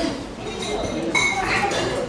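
Indistinct voices, with a light clink about a second in.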